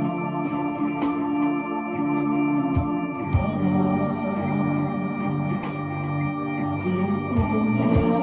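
Slow instrumental music on an electronic keyboard: sustained, organ-like chords held and changed every second or two, with a few deep bass notes underneath.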